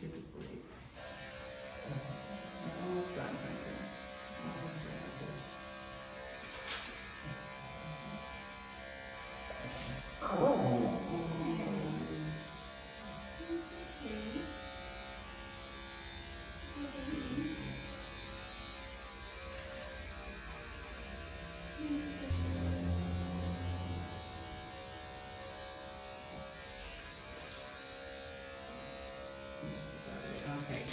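Electric pet grooming clippers running steadily as they shave a shih tzu's legs short. Short pitched sounds rise over the motor a few times, most strongly about ten seconds in.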